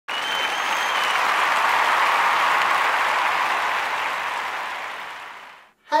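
Audience applause, most likely canned from a video-editor theme, with a high whistle in the first second. It dies away over the last second.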